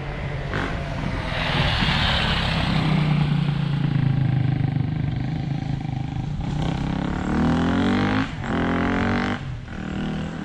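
Trial motorcycle engine running under throttle, revving up with a sharp rise in pitch about seven and a half seconds in, then dropping off briefly twice near the end. A rushing hiss sits over it about two seconds in.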